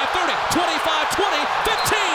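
Excited male play-by-play commentator calling a long run, his voice rising and falling in short bursts, over steady stadium crowd noise.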